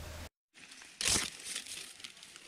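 Dry leaf litter and forest undergrowth crackling and rustling as hands push through the plants, with one loud crunch about a second in and lighter rustles after it.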